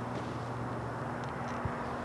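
Outdoor background noise with a steady low hum and one light click about one and a half seconds in.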